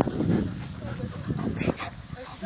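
A beagle puppy making short high-pitched vocal sounds while playing, with two brief sharp noises near the end.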